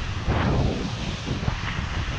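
Skis hissing and scraping through soft, sloughing fresh snow on a steep descent, with wind rushing over the microphone. A louder swish of snow comes about half a second in, and a smaller one about a second and a half in.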